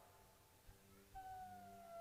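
Near silence: room tone, with a faint held tone that comes in about halfway through and falls slightly in pitch.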